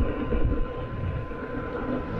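Wind and road noise from riding an Inmotion V10F electric unicycle at about 24 mph: an uneven low rumble on the helmet microphones, with a faint steady high whine throughout.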